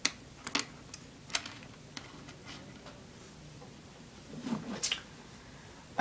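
Plastic pony beads clicking and tapping as fingers handle a strand of beads on stretchy cord: several sharp clicks in the first two seconds and another shortly before the end.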